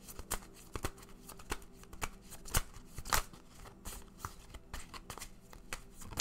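Tarot deck being shuffled by hand: irregular soft snaps and riffles of the cards, with a few louder slaps near the middle.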